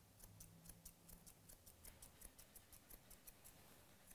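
Grooming chunkers (wide-toothed thinning shears) snipping faintly through a dog's coat: a quick, regular run of light clicks, about four or five a second.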